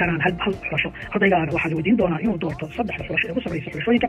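A voice speaking continuously, sounding narrow and band-limited, with background music underneath.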